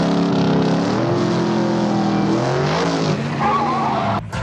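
Hot-rod car engines revving, their pitch climbing and falling, with a brief wavering squeal near the end.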